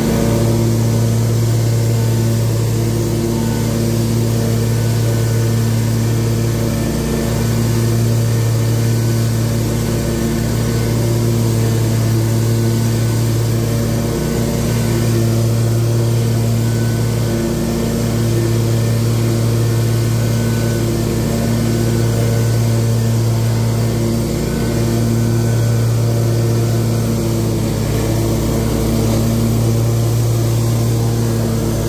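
Toro Grandstand HDX stand-on mower's engine running steadily under load while mowing grass, a loud low hum that dips briefly a few times.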